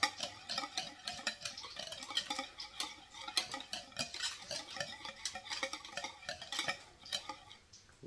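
Wire balloon whisk beating a creamy coleslaw dressing in a bowl, a quick run of irregular clinks and scrapes as the wires strike the bowl's sides, easing off near the end.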